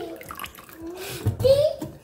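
Water poured from a plastic jug into a plastic bowl of soaking ground wakame seaweed, the stream stopping before the end. A young child's voice is heard in the background.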